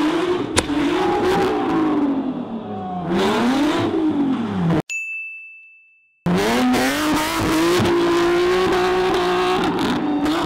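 Nissan 370Z drift car's engine revving up and down hard while drifting. About halfway through the engine sound cuts out for over a second under a single steady high beep, then comes back holding high revs.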